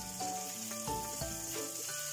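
Whole anchovies frying in oil with garlic and chillies in a stainless steel pan, a steady sizzle. Soft background music with changing notes plays underneath.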